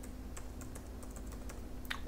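Computer keyboard being typed: a run of faint, quick key clicks, with one sharper click near the end.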